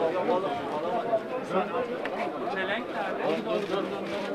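Crowd chatter: many voices talking over one another, with no single clear speaker.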